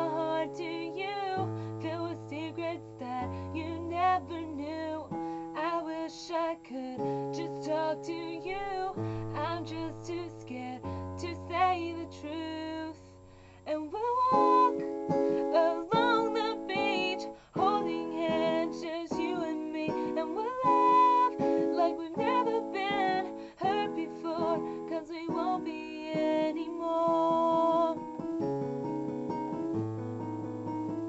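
A young woman sings a ballad solo with vibrato over instrumental accompaniment of held chords and stepped bass notes. Just before the middle the sound briefly drops, then the voice comes back fuller and louder.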